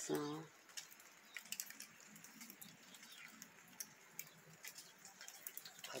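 Faint outdoor quiet after rain, with scattered light ticks of water dripping.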